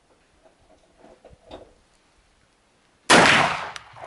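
A single shot from an MP-156 inertia-operated semi-automatic shotgun firing a Poleva-3 slug. It is a sudden, loud report about three seconds in, which rings out and fades.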